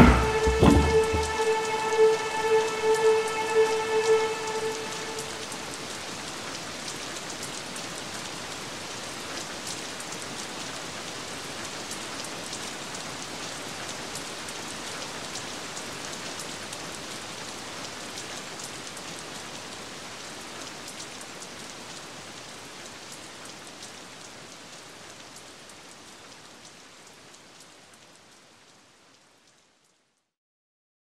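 A held tone with overtones rings for the first few seconds and dies away, leaving steady rain that slowly fades out to silence near the end.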